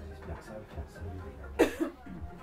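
A person coughs twice in quick succession about one and a half seconds in, loud and sharp over a quiet studio with a low steady hum.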